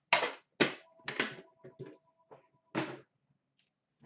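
Cardboard hockey card boxes and packs being handled and set down: about five sharp knocks and taps in the first three seconds, then quiet handling.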